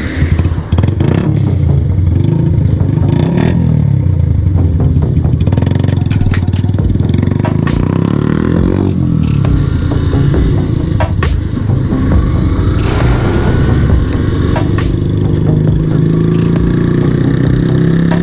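Motorcycle engine pulling away from a stop and accelerating up through the gears, its note rising and dropping with each shift, heard from the rider's own bike.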